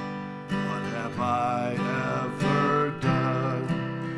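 Acoustic guitar strummed in a steady rhythm of chords.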